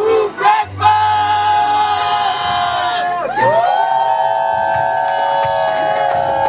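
A group of voices singing in harmony: a few quick chanted syllables, then long held notes that swoop down about three seconds in and settle into another long held chord.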